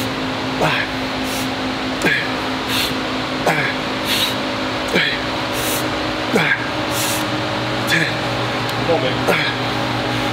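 Cable bicep curls on a gym cable machine at about one rep every one and a half seconds. Each rep brings a short sound from the cable and pulleys that falls in pitch, and between them come sharp breaths out, over a steady hum of gym ventilation.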